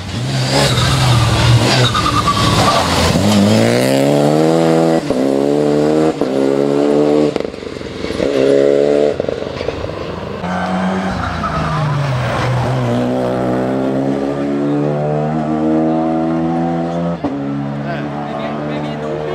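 Renault Clio Rally5's turbocharged four-cylinder engine at full throttle, revving up through the gears with a short break at each upshift. It lifts off briefly twice and pulls hard again each time.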